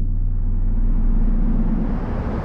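An edited intro sound effect: a deep bass rumble hanging on from an opening boom, with a hissing swell rising in pitch and growing brighter like a riser transition.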